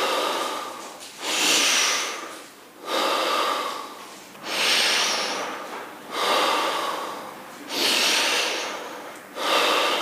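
A man's rhythmic breathing exercise for concentration and focus: strong breaths, each swelling quickly and then fading, about one every one and a half seconds.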